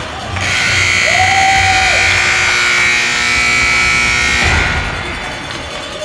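Ice-rink scoreboard buzzer sounding one long, loud, steady buzz of about four seconds, which cuts off suddenly.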